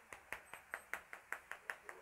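A quick, even run of about ten faint sharp clicks, roughly five a second.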